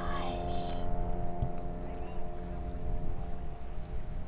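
Background music holding a steady sustained chord over a low, even rumble, with a trailing bit of a girl's voice at the very start.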